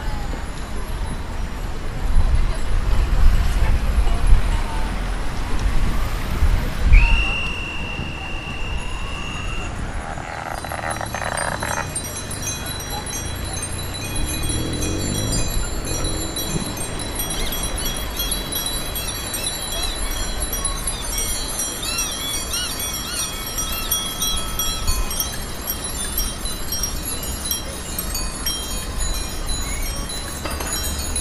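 Many bicycle bells ringing over and over from a passing column of cyclists, thickening from about halfway through. Earlier, a low rumble of wind on the microphone while riding, and a steady high-pitched tone lasting about three seconds.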